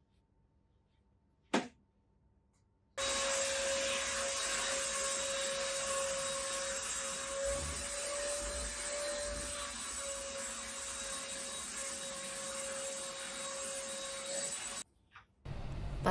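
A vacuum cleaner running steadily with a constant whine, switching on about three seconds in and stopping shortly before the end. Before it starts there is near silence with a single short tap.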